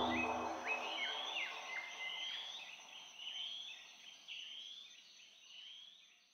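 Birds calling: a steady series of short rising calls, repeating roughly twice a second, with a few sharply falling notes in the first two seconds. The tail of a music bed dies away in the first second, and the birdsong fades out toward the end.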